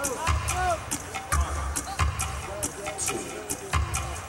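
Live rock band playing a song: drums keep a steady beat with kick thumps and cymbal ticks under piano and a bending melodic line.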